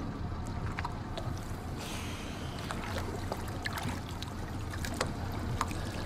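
A small fishing boat's motor idling with a steady low hum, while water splashes and knocks around the hull and a diver in the water, with a brief rush of splashing about two seconds in.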